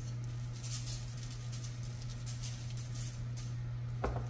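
Salt being shaken from a shaker over raw chicken pieces, a soft grainy rustle in several short shakes, over a steady low electrical hum.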